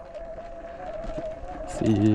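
Sur-Ron Light Bee X electric dirt bike riding a dirt trail, its electric motor giving a steady high whine that wavers slightly in pitch. A man starts talking near the end.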